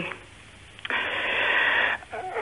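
Steady hiss over a telephone line, starting abruptly about a second in after a near-quiet pause and cutting off just before the caller speaks again.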